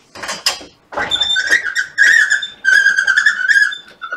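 Sliding lecture-hall whiteboard panel being pulled down on its runners, giving a high squeal with a fast rattle through it from about a second in until just before the end.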